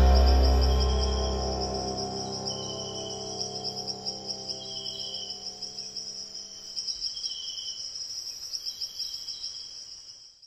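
The song's last chord rings out and fades over the first two seconds, leaving insects chirping: a steady, high, pulsing trill, with a lower chirp that comes and goes every couple of seconds.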